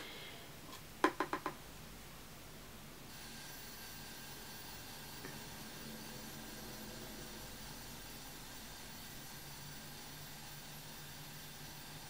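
Quiet room tone with a faint hiss. About a second in comes a brief run of four quick ticks, and from about three seconds a faint, steady, high electrical whine sets in.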